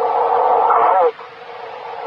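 A steady droning hum heard over a CB radio transmission, cutting off suddenly about a second in and leaving quieter radio hiss. It is the sound the listeners take for a hovering UFO 'revving up its engines'.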